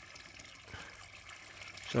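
Faint, steady trickle of water running into a garden pond.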